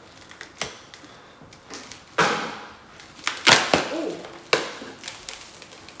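Frozen, ice-stiff cotton T-shirts cracking and crunching as they are pulled apart by hand: a few sharp crackles, the loudest about three and a half seconds in.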